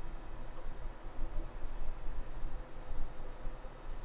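Steady low hum with a faint hiss and no distinct event: background room noise between speech.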